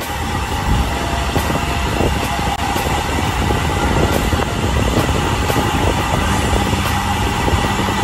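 Steady rushing noise of a bicycle riding along an asphalt road at speed: wind over the phone's microphone mixed with tyre noise on the road.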